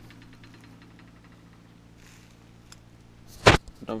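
A faint steady low hum, then a single sharp knock about three and a half seconds in: the handheld camera being bumped or set down on the counter.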